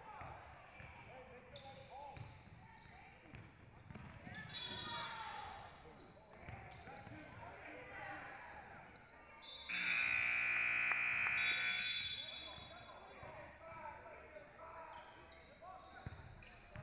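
Basketball being dribbled and voices calling out across a large gym, then a scoreboard buzzer sounds loudly for about two seconds, starting about ten seconds in.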